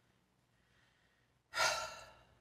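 A woman's short, breathy sigh about a second and a half in, after near silence.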